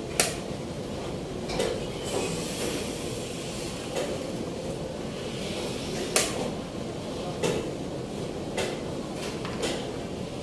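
Plastic chess pieces set down with sharp knocks on a roll-up board on a table, the two loudest just after the start and about six seconds in, with several fainter knocks between, over steady room noise.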